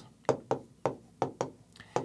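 Stylus tapping and clicking against the glass of a large touchscreen display while handwriting letters, about six sharp taps at uneven spacing.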